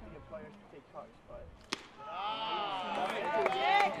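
A single sharp pop of a pitched baseball into the catcher's mitt about a second and a half in, followed by voices calling out from the field and stands.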